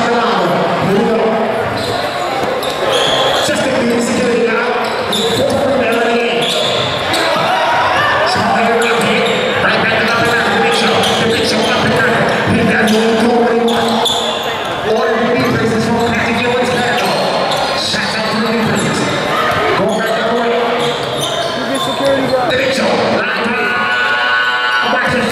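Basketball bouncing on a gym floor during play, under a steady hubbub of voices from players and spectators, echoing in a large hall.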